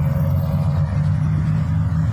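Road traffic at a busy intersection: a steady, loud low rumble of passing and idling cars.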